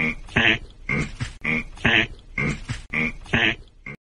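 A person's laughter in short pitched bursts, about one a second, the same pattern recurring so evenly that it sounds like a repeated laugh clip. It cuts off abruptly at the end.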